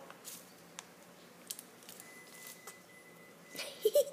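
Faint splashing and rustling of a sun conure bathing, fluffing and shaking its wet feathers, with a few soft clicks. A short, louder burst of noise comes near the end.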